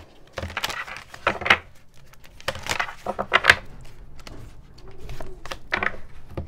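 Deck of oracle cards shuffled by hand: cards rustling and slapping together in several short bursts.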